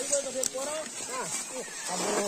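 Several men's voices calling out short, overlapping shouts as a crew hauls a long plastic pipe through scrub, the rhythmic calls that keep a group pulling together.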